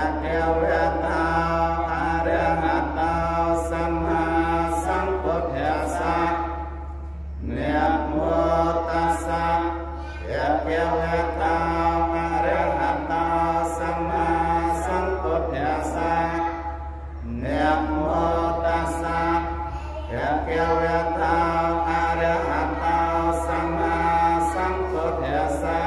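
Buddhist monks chanting in Pali into a microphone, in long rhythmic phrases broken by short breath pauses, over a steady low hum.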